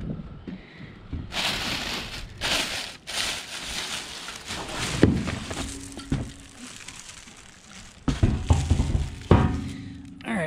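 Cardboard box flaps and the tank's plastic wrapping rustling and crinkling as a plastic fuel tank is pulled out of its shipping box. There is a sharp knock about halfway through and a few heavier thumps near the end.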